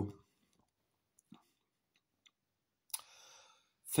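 Mostly near silence, broken by a few faint mouth clicks as the taster works a sip of stout over his palate, then a sharper click about three seconds in followed by a short breath.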